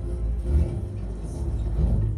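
Film soundtrack played through home-theatre speakers: a deep, steady car-engine rumble with music underneath.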